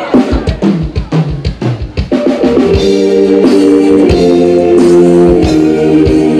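Live band: a drum-kit fill of quick snare and bass-drum hits, then about two seconds in the full band comes in with sustained chords over a steady beat.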